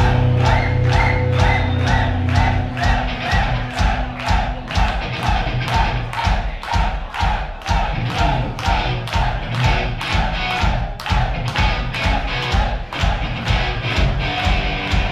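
Heavy metal band playing live: drums keep a steady, fast beat under a repeating guitar figure, heard from within the audience.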